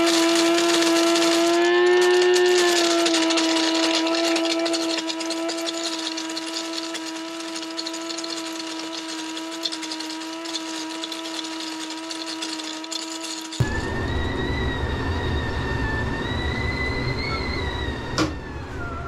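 Electric burr coffee grinder running, a steady motor whine over the grinding of beans. About two-thirds of the way through it gives way to a stovetop kettle whistling at the boil over a gas burner's low roar, the whistle wavering slightly in pitch.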